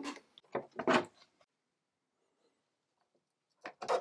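Handling noises: a few short knocks and rubs in the first second, then near silence for over two seconds, then two short scraping clicks near the end as a circuit card is pushed into an expansion slot of an Apple IIe motherboard.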